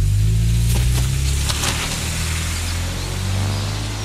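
Intro of an electronic dance track: a deep, sustained bass drone with no beat yet, overlaid by airy noise swells and a few sharp hits in the first two seconds.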